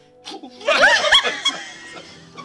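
A loud slurp from a spoon held to the lips, with laughter breaking out over it about half a second in.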